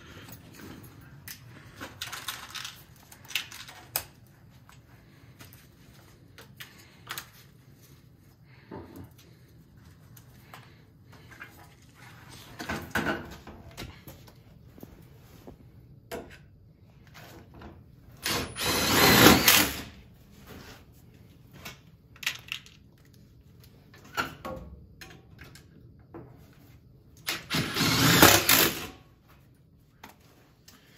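Tools at work on a switching relay's metal enclosure as it is mounted and wired: scattered small clicks, taps and knocks. Two louder rasping bursts of about a second and a half each come two-thirds of the way through and near the end.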